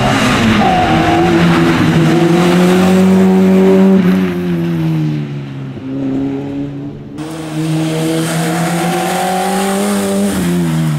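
Peugeot 106 Rally's four-cylinder engine revving hard under way. Its pitch climbs, drops about four seconds in, runs fainter for a couple of seconds, then climbs again near the end.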